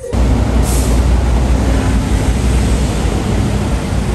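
Street traffic: a loud, steady low rumble of vehicle engines that starts suddenly.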